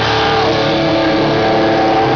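Live rock band's distorted electric guitars holding a long sustained chord at high volume, the notes ringing steadily with a slight waver.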